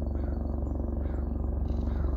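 Boeing AH-64 Apache attack helicopter passing high overhead: a steady, rapid rotor beat over a low rumble, with a hum that grows a little stronger near the end.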